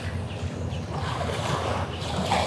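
Steady low wind rumble on the microphone, with water lapping against a concrete seawall.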